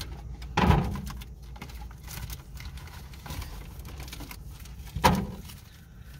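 Two dull knocks inside a car, one about a second in and one near the end, over a steady low rumble in the cabin.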